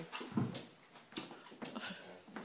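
A few light knocks and taps as a coconut and a knife are handled on a stone kitchen benchtop, with a brief low voice-like sound about half a second in.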